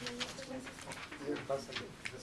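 Low, indistinct murmured voices in a small room, with a few light clicks.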